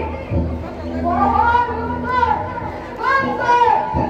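A performer's voice declaiming stage dialogue in long, drawn-out, sing-song phrases.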